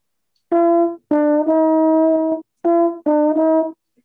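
Solo trombone playing a short phrase twice: three notes circling a target pitch, the last held for about a second, then the same three notes again more briefly. It is a chromatic enclosure, with notes a half step around the third closing onto the third.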